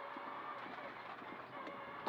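Faint, steady engine and road noise inside the cabin of a Mitsubishi Lancer Evolution X rally car driving a stage, its turbocharged four-cylinder heard low under the intercom.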